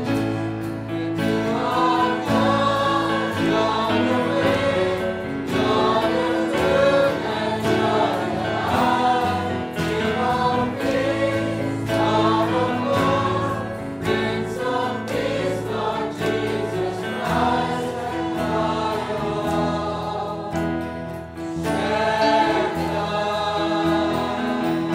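A choir singing a Christian worship song over a steady, sustained instrumental backing.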